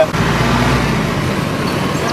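Low rumble of road traffic, like a vehicle passing, strongest in the first second and then easing.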